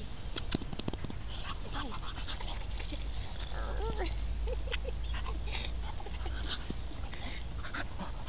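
Staffordshire bull terrier-type dog playing and rolling on grass, giving a few short rising-and-falling whines about four seconds in, with scattered rustles and clicks from its movement.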